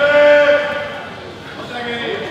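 A loud, held shout from a karateka, lasting about half a second, with quieter voices after it.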